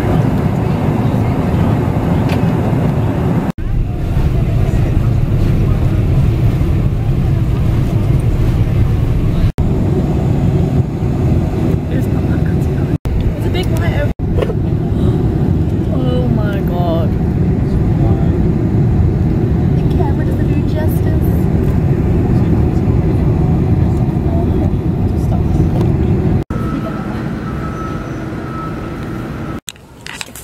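Steady low rumble of an airliner cabin in flight, the jet engines and airflow heard from inside, broken off abruptly several times where short clips are cut together. Faint voices come through the drone partway through.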